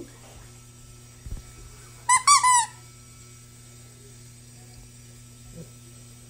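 Squeaky plush dog toy squeezed, giving a quick run of high squeaks about two seconds in.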